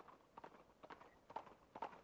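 Faint clip-clop of hooves striking hard ground at an even walking pace, about two strikes a second.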